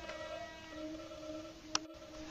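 Held electronic drone from a soundtrack: a steady chord of several sustained tones, fading slightly, with a sharp click near the end.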